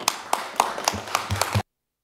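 A short burst of applause, several people clapping, which cuts off suddenly about one and a half seconds in.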